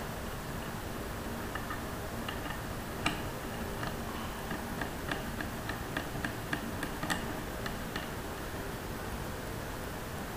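Small, irregular metal ticks and clicks as a blank-off cap is turned by hand onto a PCP air-rifle bottle adapter block, the sharpest about three seconds in, over a steady hiss.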